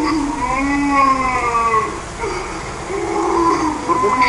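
A young boy crying in two long wavering wails, his voice run through a pitch-shifting 'G Major' effect that stacks several copies of it at different pitches.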